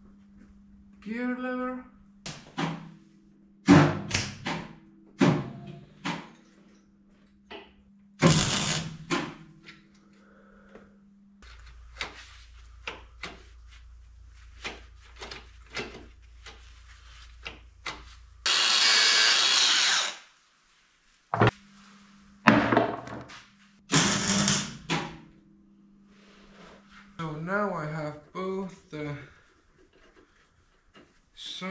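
Steel gear-linkage parts being handled and fitted, giving a scatter of sharp metallic knocks and taps. A steady rushing noise about two seconds long, just past the middle, is the loudest sound.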